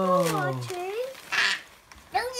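A drawn-out wordless vocal exclamation, an 'ooooh'-like sound that falls in pitch and stops about two-thirds of a second in. It is followed by a short vocal sound and a brief hiss a little later.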